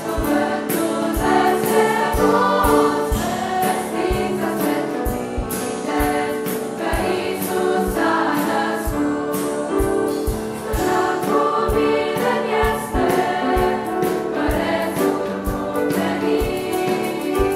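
A choir singing a Christmas carol in harmony over a steady low beat of about two thumps a second.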